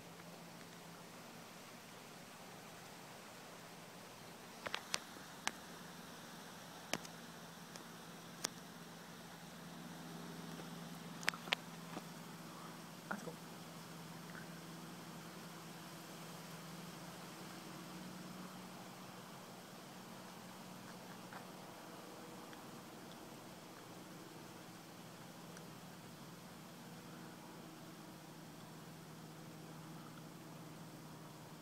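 Faint steady low hum with an even background hiss, broken by several sharp clicks between about five and thirteen seconds in.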